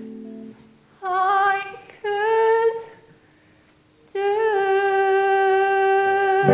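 A solo female voice singing the closing phrase of a musical-theatre ballad with little or no accompaniment. Two short notes come about a second apart, then a pause. From about four seconds in, a long held note with vibrato. Backing music fades out in the first half-second.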